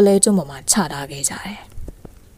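Speech only: a woman narrating a story in Burmese.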